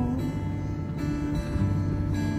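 Acoustic guitar strummed gently between sung lines of a slow song, with a sung word ending just as it begins.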